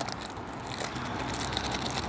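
Thin clear plastic packaging crinkling and crackling in the hands as it is pulled off a pond aerator ball, a fiddly wrapper to get open.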